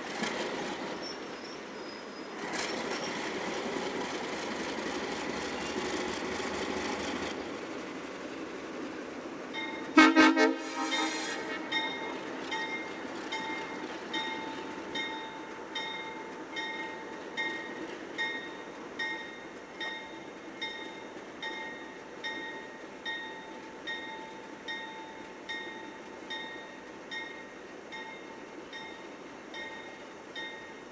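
Alco diesel locomotives approaching slowly at the head of a passenger train, running with a rushing noise for the first seven seconds. A short, loud horn blast comes about ten seconds in, and then the locomotive bell rings steadily.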